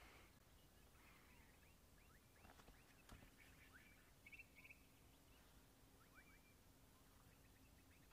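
Near silence: faint bird calls, short chirps and a quick trill about four seconds in, over quiet bush ambience.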